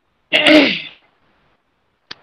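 A single short, sudden burst of breath and voice from a person, about half a second long, starting with a sharp onset and falling off in pitch.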